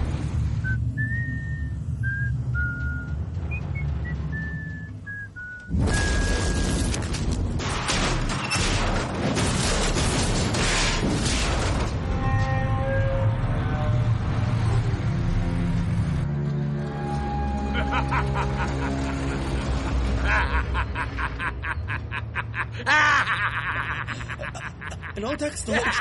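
Someone whistling a short tune over a low steady rumble. About six seconds in, a sudden loud rush of noise cuts in. It gives way to music with held notes, and a fast run of clicks comes near the end.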